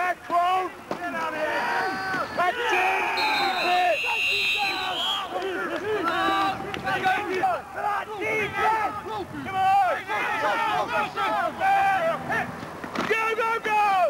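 Sideline voices of players and spectators at an American football game, several people talking and calling out at once. A steady high whistle sounds for about two and a half seconds, starting a few seconds in.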